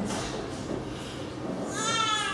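Quiet room tone in a pause, then near the end a short, high, wavering voice-like cry.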